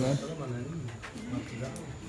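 Low, indistinct voices of people talking in the background.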